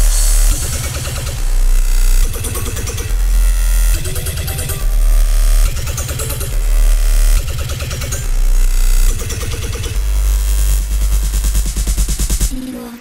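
Dubstep track in full drop: heavy sub-bass under fast, chopped bass-synth patterns and a driving beat, kicking in right after a short break.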